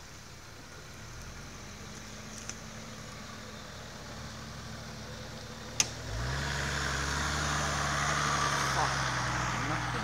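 The engine of a Toyota Land Cruiser 80-series 4x4 runs low and steady as it crawls over rough ground. There is a sharp click about six seconds in. The engine then revs up and keeps running louder and steadier as the vehicle climbs and passes close by.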